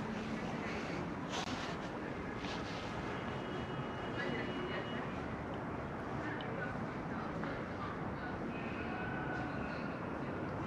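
Steady outdoor background noise, an even rumble and hiss, with a few faint distant voices and light clicks.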